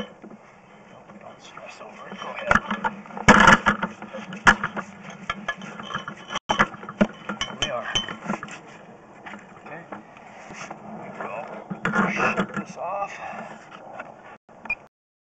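Sewer inspection camera head and push cable being reeled back up a cast-iron vent pipe, with irregular knocks, clicks and scraping, the loudest a cluster of knocks about three seconds in, over a steady low hum. Indistinct voices come and go.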